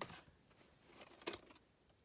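Near silence with faint handling of a plastic VHS cassette being picked up off carpet, one light click a little over a second in.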